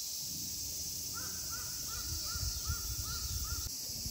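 Shoebill clattering its bill: a run of about eight claps, roughly three a second, starting about a second in and stopping near the end.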